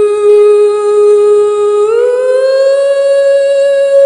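A singer holding one long note on the word "you", gliding up a step about two seconds in.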